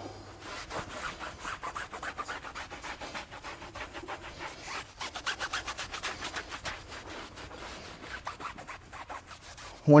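A microfiber towel rubbing back and forth on a tire sidewall in quick, even strokes, buffing tire dressing down to a matte finish.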